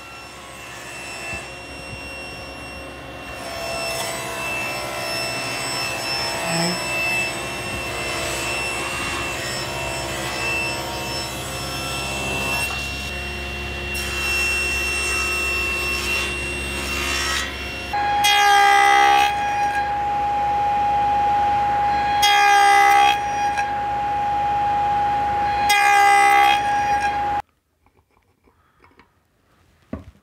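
Table saw running with a steady whine and cutting wood. In the second half, three cuts about three to four seconds apart each swell over the whine for about a second, and the sound stops abruptly just before the end.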